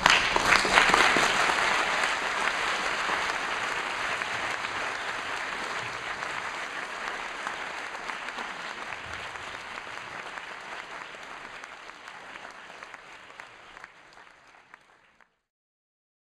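Audience applauding, loudest at the start and fading away steadily until it cuts off about fifteen seconds in.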